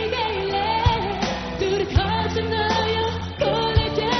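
Burmese pop song performed live by a band with a woman singing lead into a microphone. Her melody glides over held chords, with a strong drum beat about once a second.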